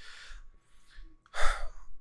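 A man breathes out softly into a close microphone, then takes a short, sharper breath in about one and a half seconds in.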